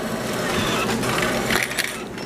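Self-checkout cash machine running as it dispenses change: a steady mechanical whirr, with a few sharp clicks and rattles of coins near the end.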